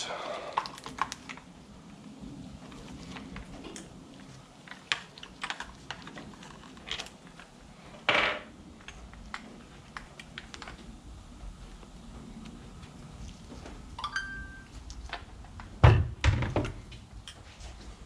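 Handling noise from work on a chainsaw: light clicks and rattles of needle-nose pliers against the saw's plastic housing while the fuel line is pulled from the tank. There is a longer scrape about eight seconds in, and a heavy thunk on the wooden workbench about two seconds before the end.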